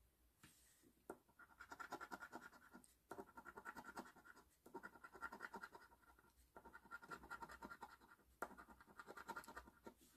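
A coin scraping the latex coating off an instant lottery scratch-off ticket: five separate quiet bursts of rapid back-and-forth strokes, one for each winning-number spot uncovered.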